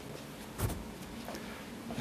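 Quiet room tone with one brief soft thump about a third of the way in.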